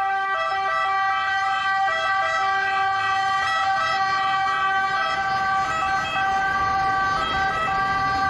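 Italian ambulance siren sounding steadily in city traffic.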